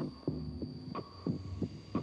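Soundtrack under a film's opening title: a low pulsing beat, a strong hit about once a second with two lighter hits between, each hit followed by short deep notes, over a faint steady high tone.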